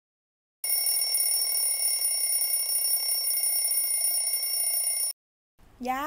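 A bell ringing continuously and steadily for about four and a half seconds, starting about half a second in and cutting off suddenly.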